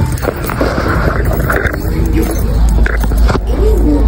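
Handling noise from a phone being carried: a low rumble with scattered knocks and rustles, under faint background voices.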